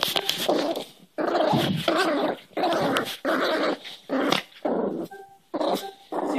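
Cairn terrier puppy play-growling during a hand-wrestling game: a run of about eight short, wavering growls with brief gaps between them.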